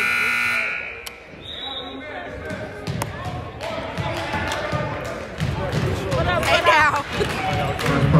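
Gymnasium scoreboard buzzer sounding a steady horn, cutting off about a second in. Then crowd chatter with scattered sharp thumps and clicks.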